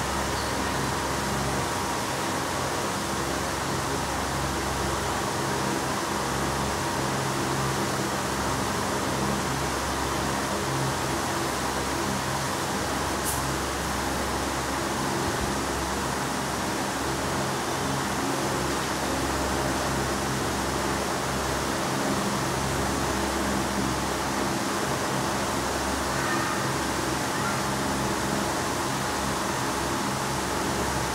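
Steady background hiss with a low hum running under it, unchanging throughout.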